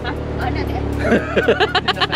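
People talking and laughing, over a steady low hum.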